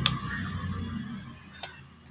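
Computer mouse clicking twice, once right at the start and again about a second and a half in, over faint room noise.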